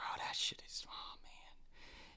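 A faint, breathy whispered voice.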